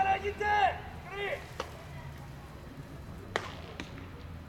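A person's loud, high-pitched drawn-out shouts at a baseball game, two calls that end about a second and a half in, followed by a few isolated sharp knocks over low background murmur.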